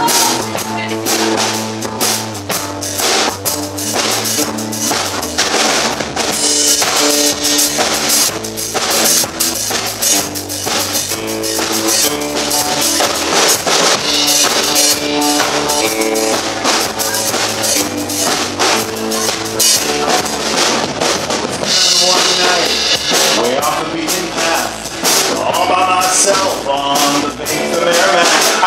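A live rock band playing an instrumental passage: a drum kit keeps a steady beat on bass drum and snare under guitars.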